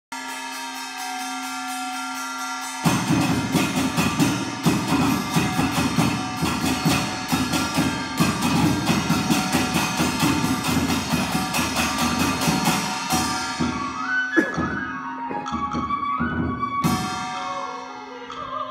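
Hand drums, a djembe among them, playing a fast, dense rhythm over a held pitched note. The note sounds alone for the first three seconds before the drums come in. The drumming thins to scattered strokes about fourteen seconds in.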